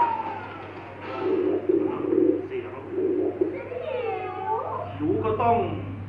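Soundtrack of a projected promotional video heard through a meeting room's speakers: a run of short voice-like calls, with one long swooping call about four seconds in, over a steady low hum.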